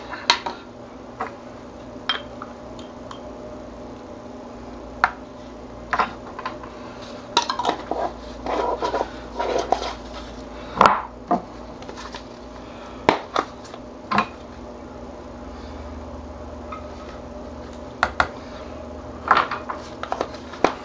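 Scattered light clinks and knocks of a spoon and plastic jugs and bowls being handled as pink colorant is added to cold process soap batter, with a few brief scraping sounds about halfway through. A steady low hum runs underneath.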